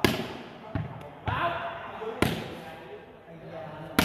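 A volleyball being slapped and handled by the server before serving: three sharp slaps, the loudest about two seconds in.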